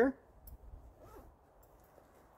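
Faint rustling of clothing as a hand digs into a front trouser pocket, with a few soft scrapes around half a second and a second in.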